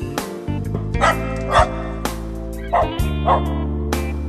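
Electronic music with a recorded dog's barks mixed in: four barks in two pairs, over sustained low notes and chords.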